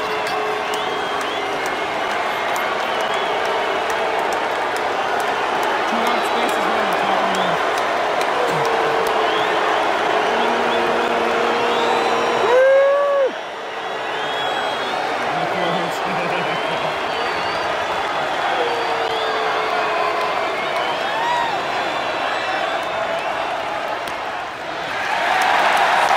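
Baseball stadium crowd: a dense, steady hubbub of many voices with scattered held shouts and a loud rising yell about halfway through, swelling into cheering near the end.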